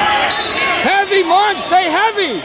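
A spectator shouting high-pitched, drawn-out calls of encouragement at a wrestler, starting about a second in, over the babble of a crowded gymnasium.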